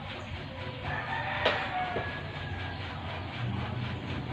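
A pause in the speech filled with faint background noise, with a faint drawn-out tone a second or so in and a single sharp click about halfway.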